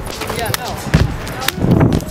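Shoes striking concrete as a parkour runner runs and lands: three sharp thuds about half a second, a second and a second and a half in. Voices are heard around them.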